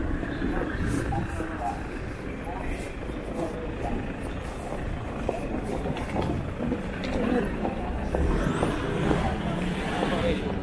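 Busy city street ambience: road traffic running by and passers-by talking, with a vehicle rumbling past louder near the end.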